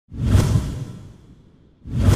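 A whoosh sound effect with a low rumble under it, starting suddenly and dying away over about a second and a half.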